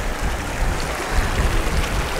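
Mountain glacial stream rushing over stones: a steady, loud hiss of running water, with an uneven low rumble underneath.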